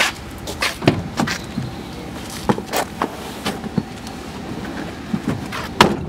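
Driver's door of a panel van being opened and someone climbing into the seat: a series of clicks and knocks, ending in the loudest thump near the end as the door is shut.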